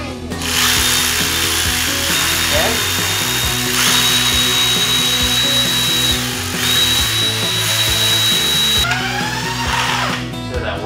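Cordless power ratchet spinning a socket on the turbocharger fasteners of a VW TDI engine to take the turbo off. It runs with a steady high whine in three long runs, stopping briefly twice.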